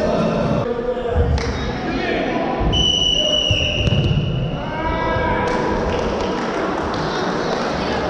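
Futsal ball thudding on a wooden gym floor amid voices echoing in a large sports hall. A referee's whistle sounds one long high note about three seconds in.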